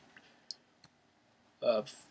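Two short clicks, about a third of a second apart, in a pause between a man's words.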